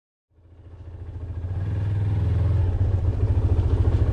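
Benelli TRK 502 motorcycle's parallel-twin engine idling with an even, rapid low pulse, fading in over the first two seconds.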